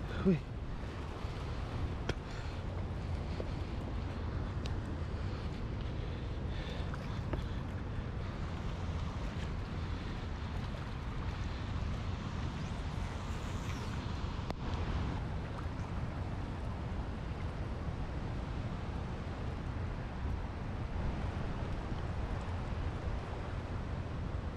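Wind rumbling on the microphone over the wash of small waves lapping against shoreline rocks, steady throughout.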